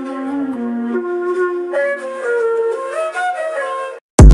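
Flute-like lead melody of a trap beat intro in E-flat minor, playing alone without drums or bass.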